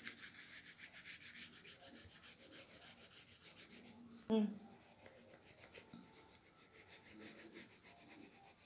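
Green crayon rubbing back and forth on the paper of a colouring book: quick, faint scratchy strokes, several a second. A brief louder sound a little past four seconds in, after which the strokes go fainter.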